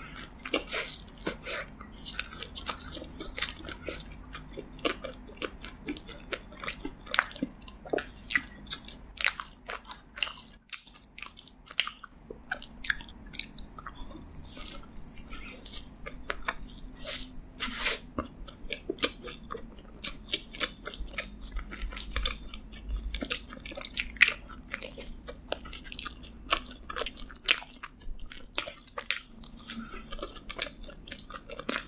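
Close-miked chewing and biting of a s'mores donut topped with marshmallow and chocolate: many short, sharp, irregular mouth clicks and wet smacks.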